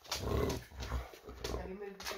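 A bulldog making low, throaty vocal sounds, wary of a sheet of wrapping paper, with a short higher-pitched sound near the end.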